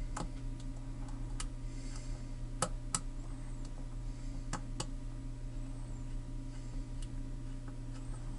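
Small, sharp metallic clicks and ticks, about half a dozen spaced unevenly, as steel tweezers work against a brass padlock core and its parts during disassembly, over a steady low hum.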